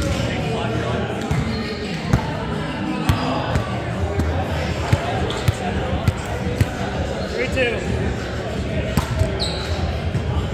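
Scattered thuds of a volleyball being hit and bouncing on a hardwood gym floor, echoing in the hall, over the indistinct voices of players.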